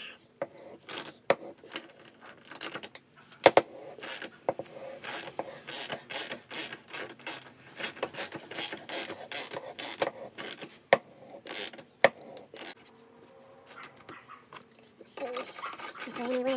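Ratchet wrench clicking in irregular runs as it turns a half-inch pipe-thread tap into a metal turbo oil-drain flange, cutting the threads deeper. The clicking stops about thirteen seconds in.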